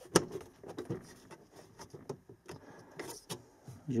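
Plastic clicks and light rustling as the cabin air filter is pressed and checked in its housing behind the glove box. There is one sharp click just after the start, then scattered softer clicks.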